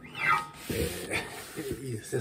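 A man's quiet voice making low, wordless murmured sounds, much softer than his normal speech.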